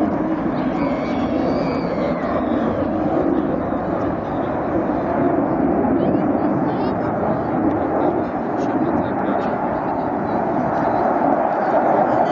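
Jet noise from a MiG-29 fighter's twin turbofan engines as it flies far off, a steady rushing noise that swells a little near the end.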